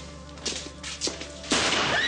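A few short knocks, then a sudden loud impact about one and a half seconds in, as of a blow or crash in a struggle.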